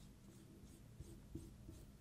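Faint marker strokes on a whiteboard: a few light scratches and taps as a small circle is drawn and hatched in.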